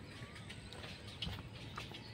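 Faint outdoor background of short high chirps and scattered light clicks over a low rumble, with one louder thump a little after a second in.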